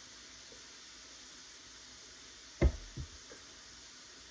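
A drink bottle set down on a kitchen counter: one sharp knock about two and a half seconds in, then a softer second knock, over faint room hiss.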